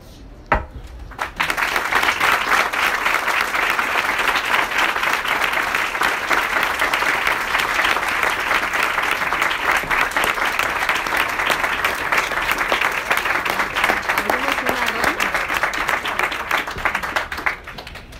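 Audience applauding: a sustained round of clapping that breaks out about a second in and dies away just before the end.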